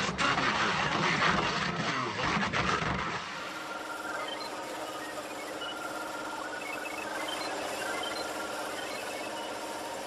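Electronic glitch sound effects: about three seconds of loud, harsh static-like noise, then a quieter steady electronic hum with short, high beeps scattered through it.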